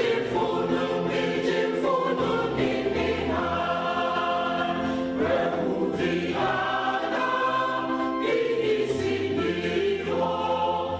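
Mixed choir of men and women singing a hymn in harmony, holding long chords that change every second or two.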